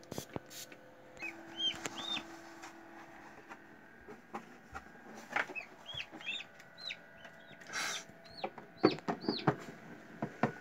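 Newly hatched chick peeping: a scattered series of short, high chirps that rise and fall in pitch. Near the end come a few sharp knocks and clicks from the plastic incubator lid being handled.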